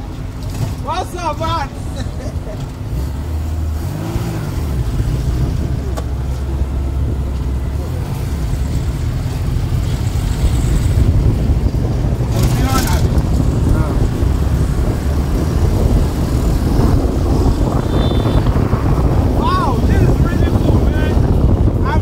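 Steady rumble of a moving open homemade car with no windshield: running gear and road noise mixed with wind. It grows louder over the first several seconds as the car gathers speed, with a few short wavering tones over it.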